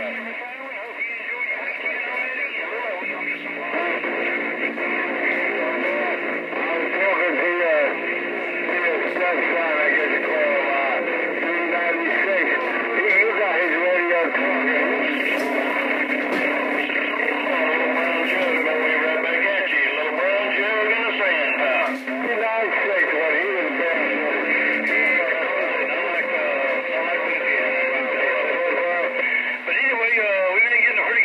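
Radio speaker of a Stryker SR-955HP receiving distant stations: garbled voices talking over each other, thin and band-limited, with steady low tones that start and stop underneath and a few crackles in the middle.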